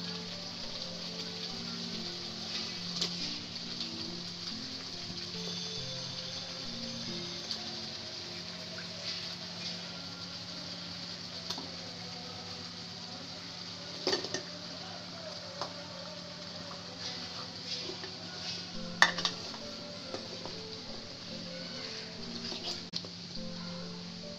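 Spice paste sizzling in an aluminium pot as raw chicken pieces and potato chunks are stirred in with a wooden spoon. The frying hiss is steady, with two sharp knocks against the pot in the second half.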